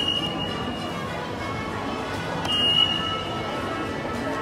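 Lift alarm buzzer sounding in two high-pitched steady tones of about a second each, the second coming about two and a half seconds in. It is set off by pressing the adjacent lift's call button, a fault in the lift's wiring or controls.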